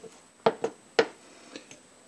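A spatula knocking and scraping against the side of a stainless steel pot of mashed potatoes: a few sharp knocks, two close together about half a second in and another at one second.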